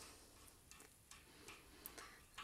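Near silence with a few faint, short ticks, about four in all: a long thin-bladed screwdriver working the stop-arm string screw on a French horn rotary valve.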